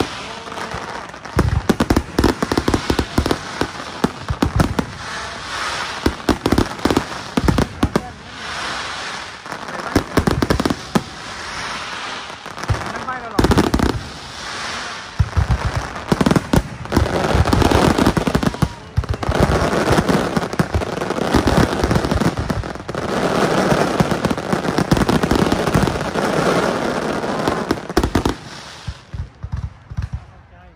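Fireworks display: a rapid barrage of aerial shell bangs over dense crackling, quietening just before the end.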